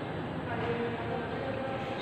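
Steady rushing background noise without clear strokes, with a faint brief murmur of a voice shortly after the start.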